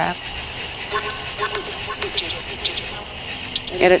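Night insects, crickets, chirring steadily in a continuous high-pitched chorus.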